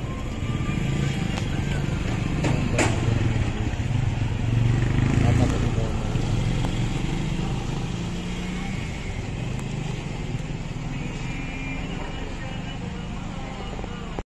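Steady outdoor background noise: a low rumble of motor traffic with voices mixed in, swelling a little in the middle, and one sharp click about three seconds in.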